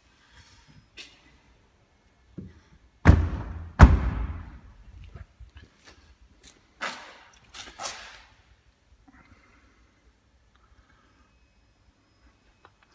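Boot lid of a BMW M4 being shut: two heavy thuds a little under a second apart, the second the louder, each with a short ringing tail. Two fainter knocks follow a few seconds later.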